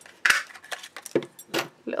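Handheld plastic craft punch snapping through copper card stock to cut a small tab, with one sharp click about a quarter second in, followed by several lighter clicks and taps as the punch is handled and put down.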